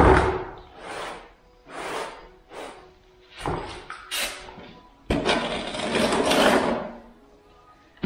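A damp sponge scrubbed over bare concrete floor in short rough strokes about once a second, then a longer scraping sound lasting nearly two seconds.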